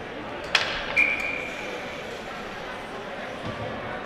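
Ice rink ambience during a stoppage in play: a steady arena hum with two sharp knocks, about half a second and a second in, the second followed by a brief high ringing tone.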